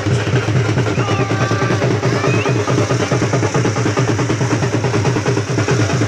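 Loud music driven by fast, steady drumming, with a few sliding high notes over it in the first half.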